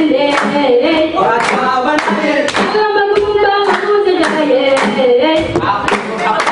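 A group of voices singing a Djiboutian folk dance song together, with hand claps keeping a beat about twice a second.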